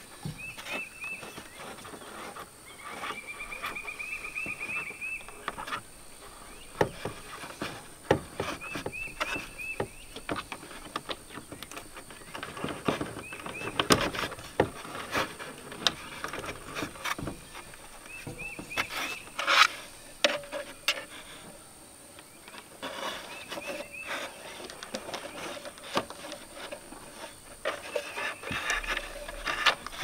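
Handling noise of a plastic RV tail light assembly worked against the wall while its wires are fed through into the body: scattered clicks, knocks and rubbing. Short high chirps recur in the background.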